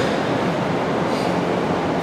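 Steady room noise in a hall, an even hiss and low rumble with no distinct events, heard in a pause between sentences of a talk.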